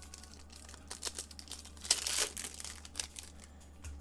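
Plastic foil wrapper of a Panini Select basketball card pack crinkling and tearing as it is opened and the cards handled, with short rustles and clicks and a louder crinkle about two seconds in.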